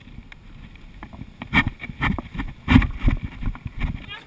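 Irregular thumps and knocks over a low rumble from a handheld camera being jostled, with two louder knocks in the middle.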